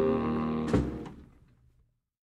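A jazz band's closing chord with saxophones and brass held, cut off by one sharp final hit about three quarters of a second in, then fading to silence as the record ends.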